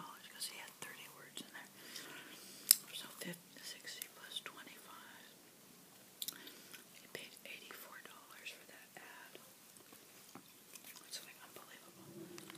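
Bubble gum being chewed: soft wet smacks and mouth clicks, with faint whispering, and one sharp, loud click about three seconds in.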